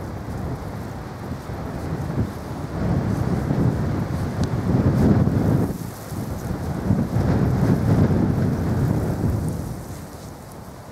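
Wind buffeting the camera microphone: a low rumbling noise that swells and eases in gusts, loudest around the middle and again near the end.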